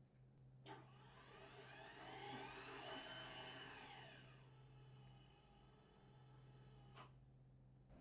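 Hörmann electric garage door operator raising a sectional garage door, faint: a soft click as it starts, a motor whine that rises and then falls in pitch as the door speeds up and slows, and a click as it stops near the end.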